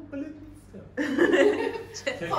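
People laughing and chuckling, louder from about a second in.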